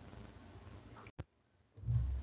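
Faint, even recording hiss that cuts off with a single sharp click a little over a second in, then a faint low sound near the end.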